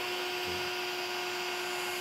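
Small electric fan with a bottle stuck on as a nozzle, running steadily: an even rush of air over a constant hum.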